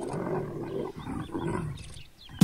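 A mating pair of leopards growling: a run of repeated low growls as the pair breaks apart at the end of copulation.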